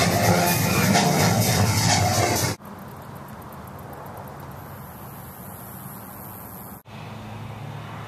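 A pickup truck towing a parade float drives past, its engine running under music from the float. About two and a half seconds in, the sound cuts off to a faint, steady outdoor hiss.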